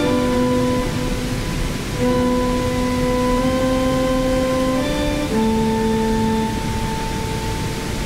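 Electronic synthesizer tones played through a small portable speaker: long held notes that step to new pitches every second or two, with changes near two seconds and again around five seconds in. A waterfall's steady rush runs underneath.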